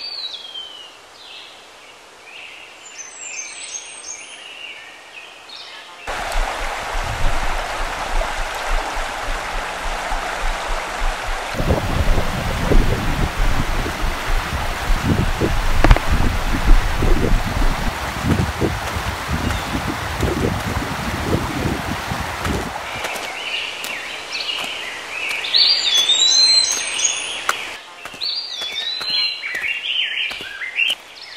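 Rushing mountain stream, loud and steady through the middle stretch, with low thumps on the microphone from about halfway in. Birds chirp in the quieter stretches at the start and near the end.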